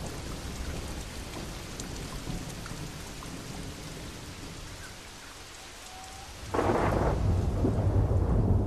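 Torrential rain falls and splashes on a water surface as a steady hiss. About six and a half seconds in, a loud rumble of thunder breaks in and keeps rolling.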